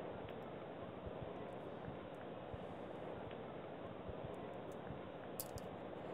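Faint scattered clicks of a computer mouse and keyboard over a steady low hiss, with a couple of sharper clicks about five and a half seconds in.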